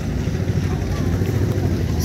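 Low, steady rumble of wind buffeting the microphone outdoors.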